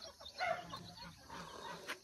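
A few faint, soft clucks from a hen.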